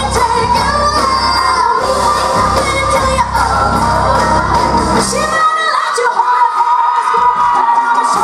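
Live pop band with female vocalists singing over drums and amplified backing in a large hall. About five seconds in the bass and drums drop away, leaving the voices over lighter backing.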